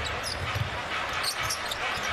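Arena sound of a live basketball game: a basketball being dribbled on the hardwood court in a few low thumps, with short high sneaker squeaks over a steady crowd murmur.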